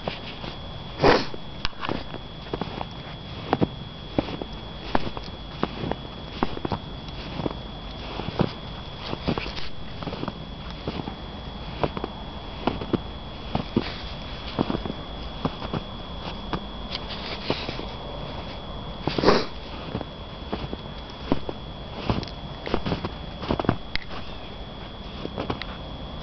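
Footsteps in deep snow, an uneven run of crunches about one or two a second, the loudest about a second in and again about two-thirds through.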